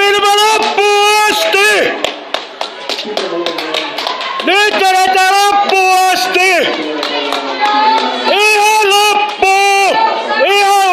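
A spectator shouting loud, drawn-out cheers of encouragement in three bursts of two or three calls each, with hand clapping between them.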